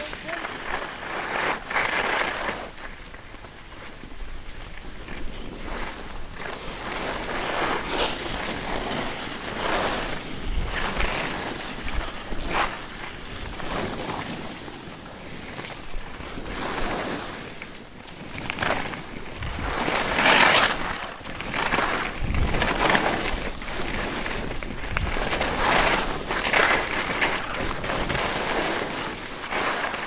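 Skis carving and scraping over packed snow through a series of turns, the hiss swelling and fading with each turn, with wind on the microphone.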